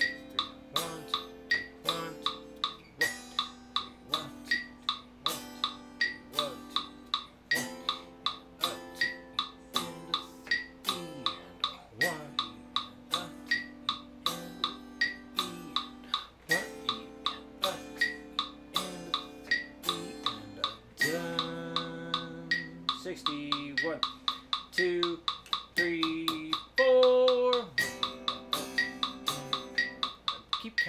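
Electric guitar playing sustained seventh chords in time with a metronome's regular clicks, the chords changing every second or two. The guitar part gets busier for a few seconds near the end.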